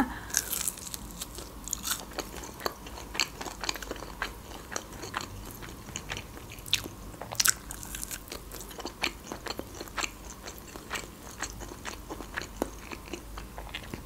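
A person biting into a minced-meat lula kebab and chewing it, heard as a steady run of irregular wet mouth clicks and smacks.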